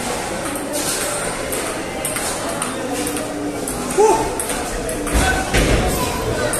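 Table tennis rally: a celluloid ping-pong ball clicking sharply off paddles and the table in a quick run of hits, over background chatter and music.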